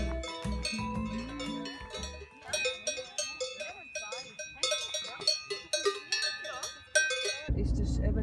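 Background music built from bell-like struck tones, with melodic lines gliding over them. About seven and a half seconds in it cuts off abruptly into a steady low rumble.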